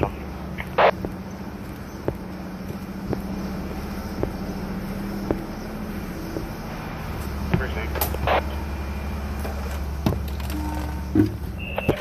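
A steady low hum that grows deeper and stronger about seven seconds in, with a few short, brief sounds over it.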